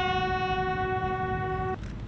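Bugles holding one long, steady note that ends a bugle call, cutting off sharply near the end.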